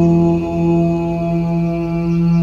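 Mantra chant music: a low chanted tone held on one steady pitch over a sustained drone.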